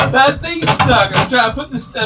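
Overlapping, indistinct voices talking, with a few sharp knocks and clatters among them.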